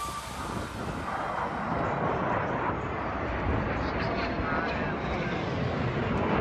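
Jet engines of Blue Angels F/A-18 Super Hornets pulling up vertically in formation, heard as a steady rushing noise with no clear pitch.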